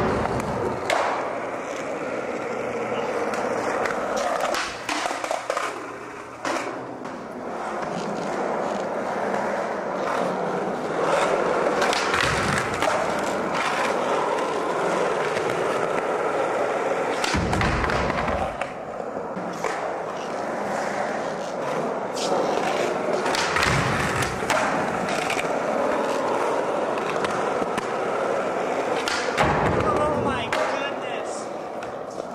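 Skateboard wheels rolling on a smooth concrete floor, broken by several sharp clacks and low thuds as the board pops and lands. The board also scrapes while sliding along the top of a wooden ledge.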